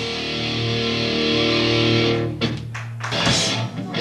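Live hardcore band in a break of the song: a distorted electric guitar and bass chord held and ringing for about two seconds, then cut off, leaving a few scattered drum hits before the full band crashes back in near the end.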